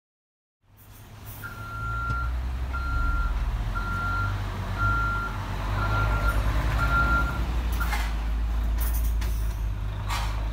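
A vehicle's reversing alarm beeping six times, about once a second at one steady pitch, over a low engine rumble, with a couple of knocks near the end.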